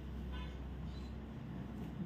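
A low, steady background hum with no speech.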